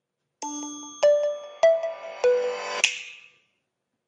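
HTC One M7 startup jingle as the phone reboots: a short melodic chime of about five ringing notes, the last a bright high shimmer that fades out.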